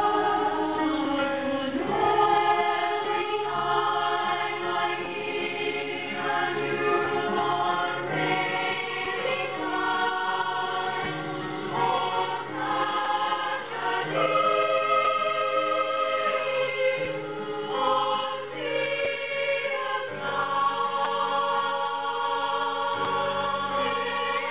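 Women's choir singing in held harmony, the chords moving every second or two.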